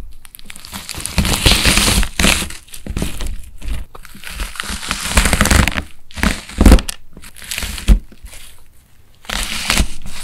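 A plastic knife cutting through a slime-soaked melamine sponge with a crisp wax coating: dense crackling and crunching as the brittle wax shell breaks. It comes in several strokes with brief pauses between them.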